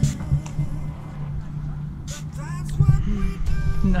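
Trigger spray bottle squirting soapy water in a few short hissy bursts, over steady background music, with brief voices in the second half.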